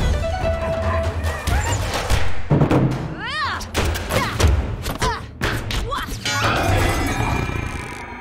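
Fight-scene soundtrack of an animated film: a music score plays under a series of sharp hits and thuds, with grunts and short cries from the fighters. About six seconds in there is a quick rattling run of clicks.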